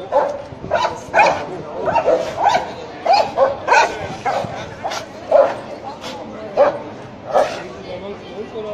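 Leashed police dog, a shepherd-type breed, barking in a rapid, uneven series of about a dozen short, loud barks as it rears up straining against its handler.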